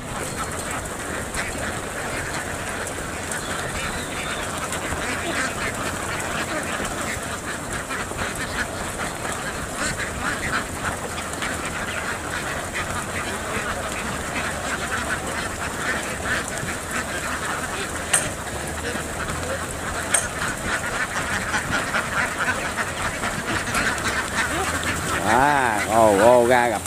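A large flock of about 4,200 domestic laying ducks quacking continuously in a dense, overlapping chorus as they crowd off a ramp into a field.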